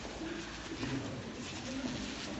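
Several people's voices making short, low cooing hums, overlapping as a group moves about the room.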